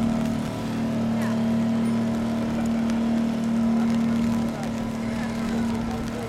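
A boat's motor running with a steady low drone that eases off near the end, with voices in the background.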